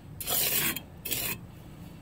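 Trowel scraping wet, sandy mortar mix against brick: two rasping strokes, the first louder, in the first second and a half.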